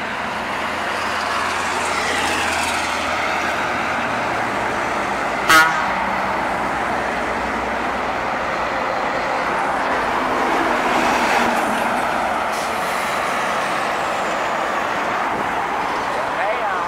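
Loaded bonneted Scania 112 and 113 trucks passing one after another, their diesel engines and tyres running steadily and rising and falling in pitch as each goes by. A brief horn toot sounds about five and a half seconds in, the loudest moment.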